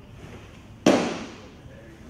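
A pitched baseball popping into the catcher's mitt about a second in: one sharp crack that rings off briefly in the indoor facility.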